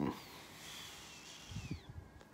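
A long, soft exhale through the nose with a hand held at the face, then a few soft low bumps near the end as the hand brushes the phone or face.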